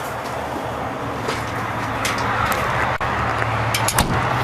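Steady low drone of an idling diesel engine, growing slightly louder after about two seconds, with a few sharp clicks near the end.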